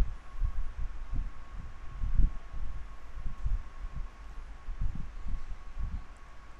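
Irregular dull low thuds, one or two a second, of a stylus writing on a pen tablet, picked up through the desk by the microphone, over a faint steady high tone.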